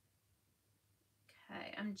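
Near silence (room tone) for over a second, then a woman starts speaking near the end.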